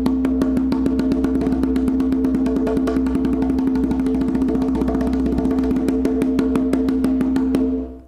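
Conga drum played with a fast, even stream of open-tone strokes from alternating hands, the fingers striking near the rim so the skin rings with a clear, steady pitch. The run stops just before the end.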